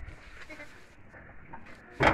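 Faint, brief bleats of sheep over low background rumble.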